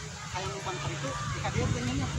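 Several boys' voices talking over one another in indistinct chatter, with a low rumble underneath.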